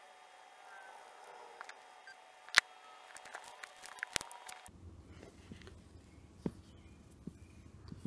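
Quiet handling of a smartphone held in the hand while tweezers work at its earpiece, with a few sharp clicks, the loudest about two and a half seconds in and another a little after four seconds.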